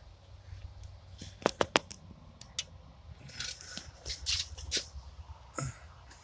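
Light handling noise: a quick run of three sharp clicks about a second and a half in, then scattered small ticks and soft rustles over a low rumble.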